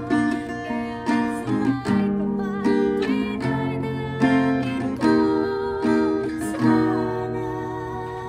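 Acoustic guitar with a capo, strummed in a steady down-and-up pattern through the song's chord changes, with an accented strum about once a second. Near the end the last chord is left ringing and fades.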